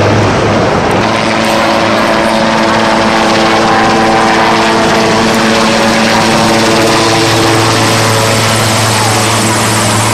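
Helicopter flying low overhead, its rotor and engine noise loud and steady. A steady hum of several tones comes in about a second in and fades out shortly before the end.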